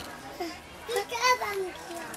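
Young children's voices, talking and calling out, with the loudest call just past a second in.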